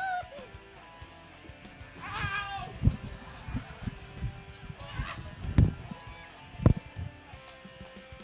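A rider on a mechanical bull whoops once about two seconds in, then three heavy thuds and smaller knocks follow as he is jolted in the saddle and thrown onto the inflatable mat, over faint background music.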